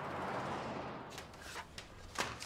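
A passing vehicle's noise swelling and then fading away, followed by a few short sharp clicks in the second half.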